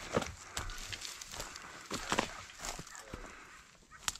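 Footsteps through dry sagebrush and grass, with brush rustling against the legs: a few uneven steps at a walking pace.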